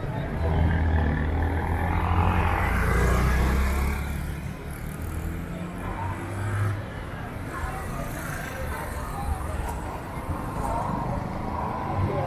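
Street sound dominated by a motor vehicle engine running close by, loudest in the first four seconds and then fading away, with voices talking in the background.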